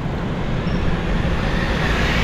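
City street traffic noise: a steady low rumble of motorbike and car engines and tyres on the road, with a city bus close by near the end.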